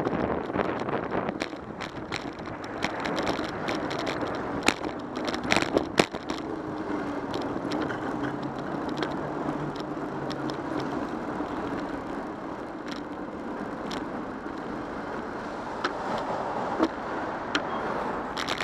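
Steady city traffic and road noise heard from a camera mounted on a moving bicycle, with a steadier hum from cars alongside in the middle stretch and scattered sharp clicks and knocks from road bumps.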